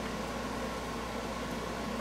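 Steady room tone: a low, even hum with a faint hiss and no distinct events.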